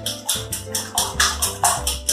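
A wire whisk beating eggs in a glass bowl: quick, regular clicking strokes, about six a second. Background music plays underneath.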